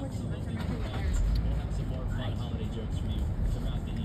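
Low, steady rumble of a car's engine and tyres heard from inside the cabin while driving slowly, swelling a little about a second in, with faint voices underneath.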